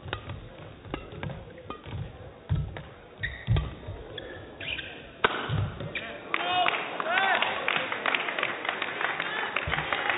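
Badminton rally: the shuttlecock is struck back and forth with sharp knocks and shoes squeak on the court. About five seconds in the rally ends with a hard hit, and the crowd cheers and shouts.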